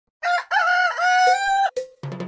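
A rooster crowing once, cock-a-doodle-doo: a short opening note, a long drawn-out middle, and a short final note.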